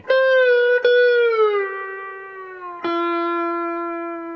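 Epiphone Casino hollow-body electric guitar played with a metal slide on the B string. A note is picked and eased down a fret, then picked again and slid down to a lower note. A third, lower note is picked as the slide lands on it and is left ringing and fading.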